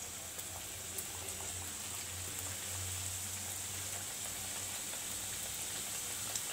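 Karanji pastries deep-frying in hot oil: a steady sizzle of bubbling oil with small scattered crackles.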